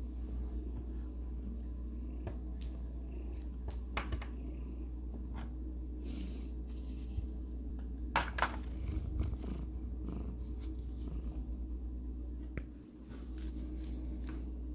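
A domestic cat purring steadily, close to the microphone. The purr breaks off briefly near the end. A few light clicks and taps of small plastic pieces being handled sit over it, the loudest about eight seconds in.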